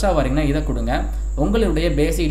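A man talking, over a steady low hum and a faint, steady high-pitched whine.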